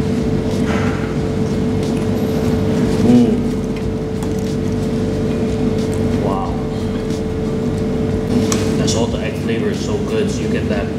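Steady mechanical hum with one constant tone throughout, over which a man makes short appreciative 'mm' sounds as he chews fried chicken, about three seconds in and again about six seconds in.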